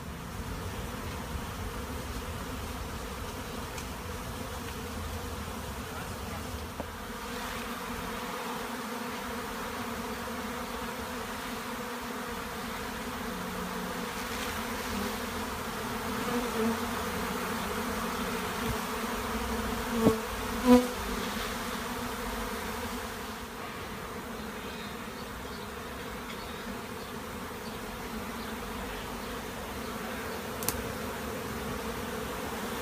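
A honeybee swarm in flight: many bees making a dense, steady hum. Two brief, louder buzzes come about two-thirds of the way through.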